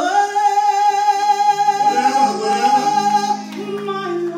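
A woman singing a gospel solo into a microphone, holding one long note for about three and a half seconds before moving to a lower note, with steady instrumental accompaniment beneath.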